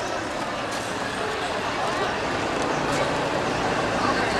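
Steady, noisy outdoor background with indistinct voices, growing slightly louder.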